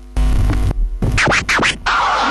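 Turntable scratching in an electronic track: a faint hum, then a loud hit with deep bass just after the start, followed by a run of quick scratches sweeping up and down in pitch in the second half.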